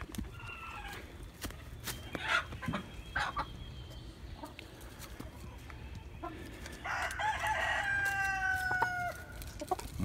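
Chickens clucking softly, then a rooster crowing once, a long call starting about seven seconds in that holds its pitch and falls slightly at the end.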